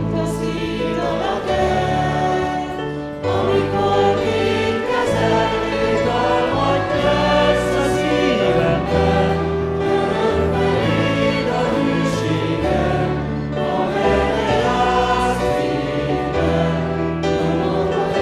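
A group of singers sings a hymn together, accompanied by acoustic guitar with trumpets playing along. The music runs steadily at full volume, the chords changing every couple of seconds.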